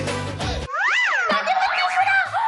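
Background music cuts off under a second in, followed by a sound effect that glides up in pitch and back down, then further wavering, sliding tones.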